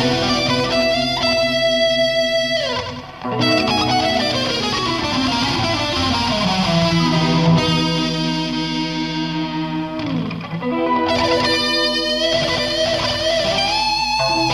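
Electric guitar through effects playing a slow instrumental passage: held notes, with the pitch sliding down several times, and a brief dip in level about three seconds in.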